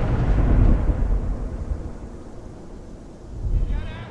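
A deep, loud rumbling boom that peaks about half a second in and fades over the next couple of seconds, with a shorter swell of rumble near the end.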